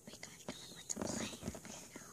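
Soft whispering from a child, with light clicks and taps as small plastic toy pony figures are handled and set down on a plastic playset.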